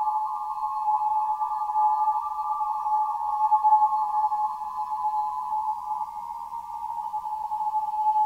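Ambient drone of water-filled wineglasses rubbed at the rim: several high ringing tones close together in pitch, layered into one steady sound that swells and fades slightly.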